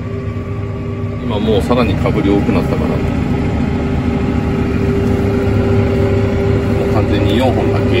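Tractor engine's steady drone heard inside the cab while pulling a seed planter at work. It grows louder about a second in and holds there as the tractor speeds up.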